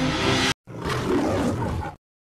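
Theme music cuts off about half a second in. A roar sound effect follows and lasts a little over a second.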